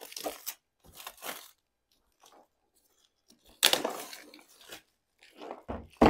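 Plastic shrink wrap being torn and crinkled off a hard plastic case, in several short rustling bursts, the loudest about three and a half seconds in.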